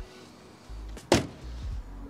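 A BMW M3's bonnet being pushed shut, closing with a single sharp slam about a second in.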